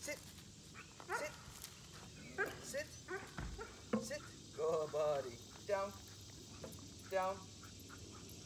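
A dog barking and whining, five or six short calls spread a second or so apart.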